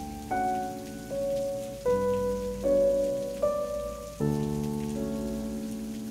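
Slow, soft background piano music: a new chord or note struck about every second, each one ringing on until the next.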